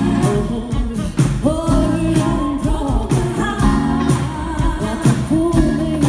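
Live funk-soul band playing: a woman's lead vocal over drums, bass and keyboards, with regular drum hits under the sustained sung lines.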